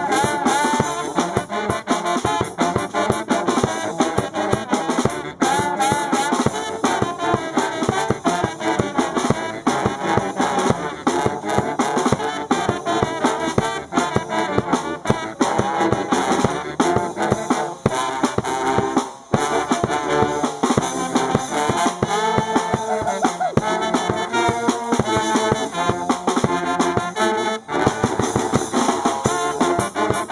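A brass band playing an upbeat tune: saxophones, trumpets, trombone and sousaphone over a drum kit, with a brief break about two-thirds of the way through.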